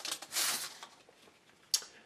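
Rustle of a trading-card pack's wrapper and cards being handled as cards are pulled out, followed near the end by a single sharp click.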